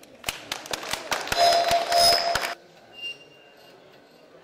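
Small tracked robot rover on gravel: a rapid, irregular crackle of stones crunching and clicking under its tracks, joined about halfway through by a steady electric motor whine, all stopping suddenly after about two and a half seconds.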